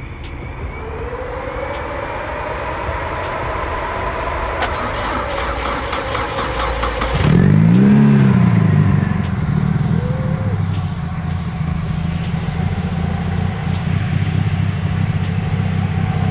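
Proton Putra's 4G93 twin-cam four-cylinder, fitted with a 272 high cam, cranks for about two and a half seconds and catches about seven seconds in. It revs up briefly, then settles into a steady idle.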